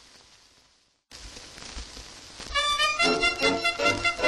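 Old 78 rpm record surface hiss fades out to a moment of silence, then the hiss resumes. About two and a half seconds in, a band starts playing a rhythmic instrumental introduction to a comic song.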